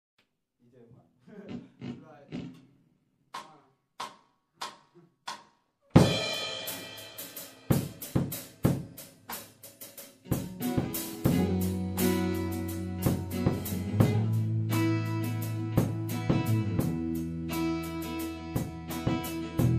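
A brief voice, then four drumstick clicks about half a second apart counting the band in. At six seconds the drum kit comes in with snare and bass drum hits, and about ten seconds in guitar chords join with held notes under the drumming.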